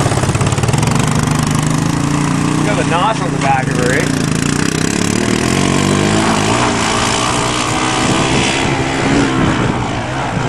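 Honda three-wheeler ATV engine running well under throttle. Its pitch rises and falls in steps in the second half as it is revved.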